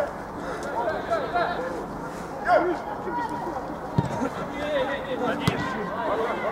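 Men's voices calling and chattering across the football pitch, with two sharp knocks about four and five and a half seconds in.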